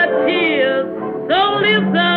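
A 1927 jazz-blues record: a woman singing with wide vibrato and sliding pitch over a small jazz band. The sound is thin and narrow-band, cut off in the highs and lows like an old 78 transfer.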